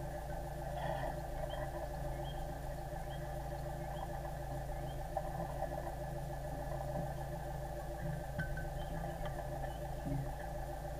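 A sailboat's inboard engine running steadily at low revs, a constant hum made of several held tones.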